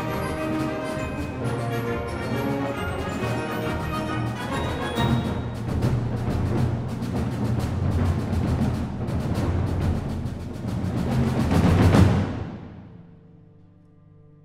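Symphonic wind band playing: held chords give way to rapid drum strokes that build with the full band to a loud climax about twelve seconds in. The climax cuts off and rings away, leaving a soft held chord near the end.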